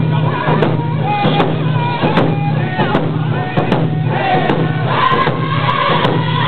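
Cree round dance song: a group of singers chanting in unison over hand drums struck in a steady beat, a little more than one strike a second.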